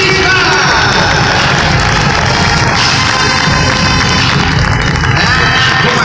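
Loud music played over an arena's public-address system, with crowd noise and cheering underneath.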